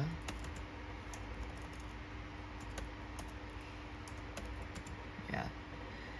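Computer keyboard keys being typed in an irregular run of clicks.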